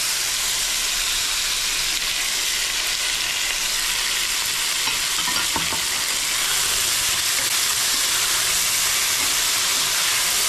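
Diced potatoes frying in hot ghee and oil in an aluminium pan, a steady sizzle, with a few light spatula scrapes around the middle as they are stirred.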